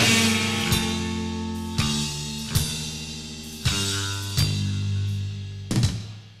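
Live rock band letting a final chord ring on electric guitar and bass while the drummer plays about six separate drum and cymbal hits, spaced unevenly; the held chord slowly fades as the song ends.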